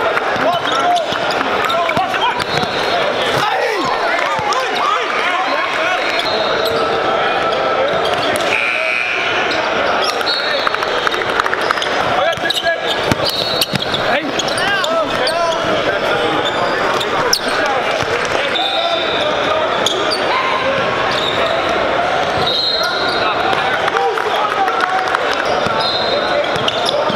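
Live gym sound of a basketball game: crowd chatter in a large hall, a basketball dribbling on the hardwood, and sneakers squeaking on the court now and then.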